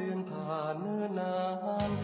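A Thai luk thung song playing: a sung line of long, gliding notes over light backing, with the bass dropping out and coming back in near the end.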